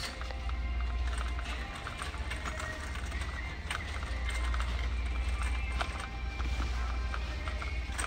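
Shopping cart rolling over a concrete store floor, its wheels rumbling and rattling steadily, with background music playing over the store's speakers.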